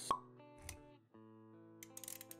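Intro sound design for an animated logo: a sudden sharp pop just after the start, the loudest moment, then a soft low thud, then music of held notes over a low bass note.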